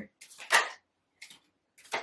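Tarot cards being handled and drawn from a deck: a few short, crisp papery rustles, the loudest about half a second in.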